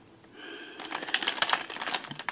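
Clear plastic bag crinkling as a bagged plastic model-kit sprue is handled, a quick run of sharp crackles starting about half a second in.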